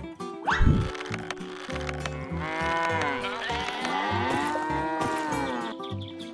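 A cow mooing in one long drawn-out call whose pitch bends up and down, over light background music. A brief loud sweeping sound comes about half a second in.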